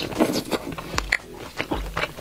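Close-miked biting and chewing of grilled pork belly: a quick run of short, sharp crunches and mouth clicks as the roasted fatty crust is bitten through and chewed.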